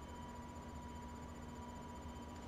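Quiet room tone with a faint, steady hum.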